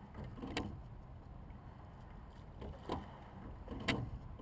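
Hudson single racing scull being rowed: a steady low rush of water and hull noise, broken by sharp knocks every second or two from the oars working in their oarlocks during the stroke.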